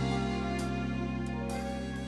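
A harmonica holding a long note over a slow ballad band accompaniment, fading gradually.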